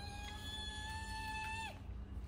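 A woman's high, drawn-out excited squeal. It glides up at the start, holds on one pitch for about a second and a half, then drops away.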